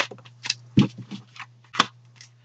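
Tarot cards being handled: about five short, sharp card snaps and taps as a card is drawn from the deck and laid on the cloth, over a steady low hum.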